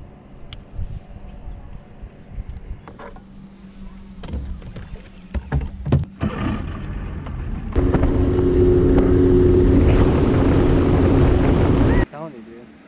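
A boat motor running steadily with a hum, starting abruptly about eight seconds in and the loudest thing here; before it, scattered knocks and clicks.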